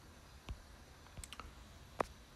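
A few faint, short clicks: the loudest about half a second in, a few lighter ones a little past the middle, and one right at the end, over low room hiss.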